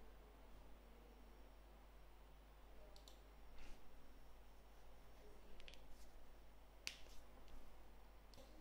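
Near silence with a few faint, sharp computer mouse clicks spread through it.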